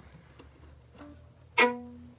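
A single fiddle note, sounded sharply about one and a half seconds in and dying away; a faint brief string sound comes just before it.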